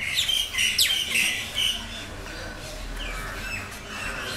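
Felt-tip marker squeaking and scratching on paper as letters are written, in short squeaky strokes that are strongest in the first two seconds.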